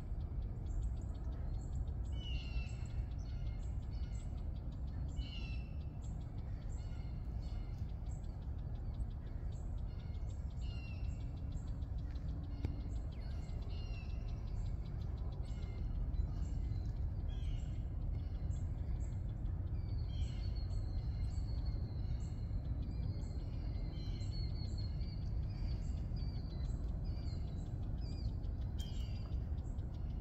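Small birds chirping in short, scattered calls, with a faster run of high chirps from about twenty seconds in, over a steady low rumble.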